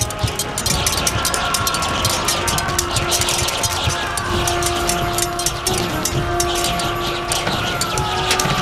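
Battle-scene soundtrack: dramatic score with long held notes over a continuous din of battle, full of many short, sharp clashes and impacts.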